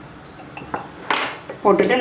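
A few light clinks of a spoon against a small ceramic jar, one with a short ring, about a second in; a woman starts speaking near the end.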